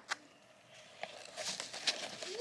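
Faint rustling and light clicks of a plastic-bagged Lego set being handled among packing peanuts: a click at the start, a near-quiet second, then scattered rustles with a sharper click near the end.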